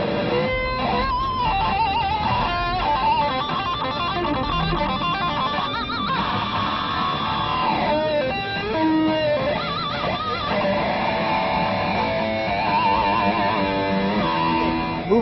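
Electric guitar played through an overdrive pedal combined with the Triskelion harmonic EQ pedal: a distorted single-note lead line with vibrato on the held notes and a sliding fall in pitch midway.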